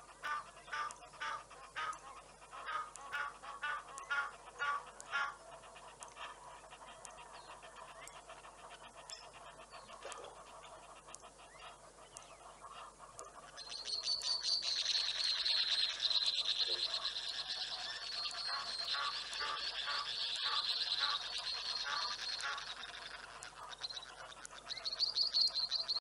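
Wild birds calling: a series of evenly repeated calls, about two a second, for the first five seconds. From about fourteen seconds a dense, high-pitched chatter of calls takes over and is the loudest part.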